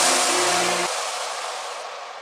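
Closing noise wash of an electronic track: a sudden hiss of white noise with a low held note under it that stops about a second in, then the noise fades away.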